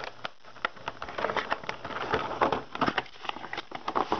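Cardboard box and clear plastic packaging being opened and handled: a run of irregular crackles, rustles and small clicks.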